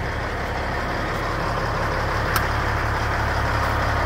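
Freightliner semi truck's diesel engine idling with a steady low rumble.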